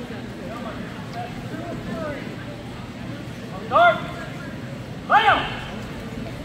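Two loud, drawn-out shouts about a second and a half apart, over quiet talk and murmur from onlookers.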